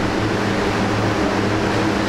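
Steady room noise between phrases of speech: an even, loud hiss with a low steady hum beneath it, of the kind an air conditioner or fan and the recording chain give.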